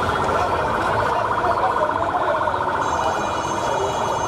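An escort vehicle's siren sounding a fast, steady warble over the noise of a large crowd, with voices and shouts mixed in.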